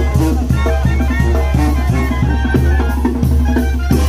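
A marching brass band playing in the street: sousaphone bass under trombones and other brass, with a steady drum beat.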